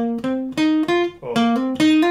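Steel-string acoustic guitar playing single notes picked one at a time, a short figure that climbs in pitch and is played twice.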